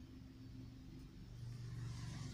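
Faint low steady rumble that swells a little in the second half, with faint pen-on-paper writing.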